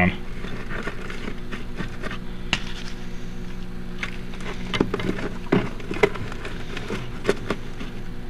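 A steady low hum, with scattered soft taps and rustles from a loose peat and tree fern substrate mix being crumbled by hand into a rock planter.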